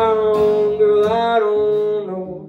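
A man's singing voice holding one long note, wavering slightly, over strummed acoustic guitar; the note ends near the end.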